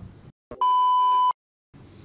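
A single steady electronic bleep tone, under a second long, with dead silence either side of it.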